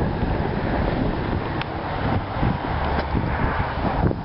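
Wind buffeting the microphone: a rough, continuous rushing rumble heaviest in the low end.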